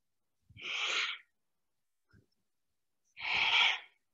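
A woman's two forceful, audible yoga breaths, each under a second long and about two and a half seconds apart, paced with a seated forward-and-back flexing of the upper spine.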